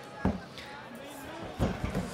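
Arena crowd noise with scattered voices calling out. There is a short knock near the start and a few dull thumps about a second and a half in, as the grappling fighters scramble on the canvas.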